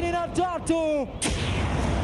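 Stage spark fountains (pyrotechnic gerbs) firing with a sudden burst of noise about a second in. Before it comes a run of short, evenly repeated pitched calls.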